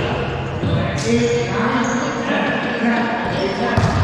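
Players' voices echoing in an enclosed racquetball court, with sharp smacks of the wallyball, once about a second in and again near the end.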